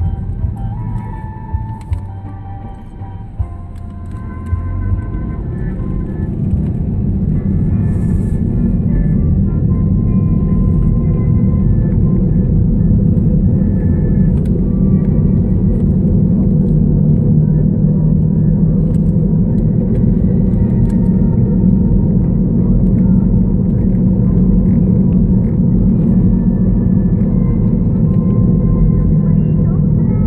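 Road and engine rumble inside a moving car's cabin, growing louder over the first several seconds as the car picks up speed, then holding steady. Faint music plays underneath.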